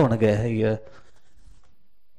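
A man's preaching voice holding a drawn-out syllable at a steady pitch, then stopping a little under a second in, leaving only faint room tone.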